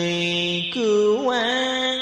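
A voice chanting Buddhist verse in a Vietnamese sung style, holding a long note, then starting a new note about two-thirds of a second in that slides up and settles into another held tone.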